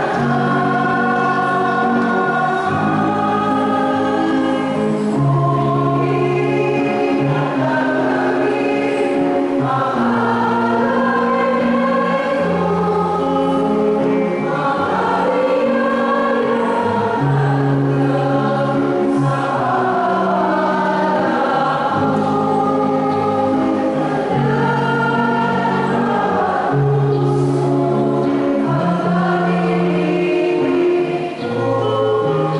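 Church choir singing a slow hymn, the voices holding long notes.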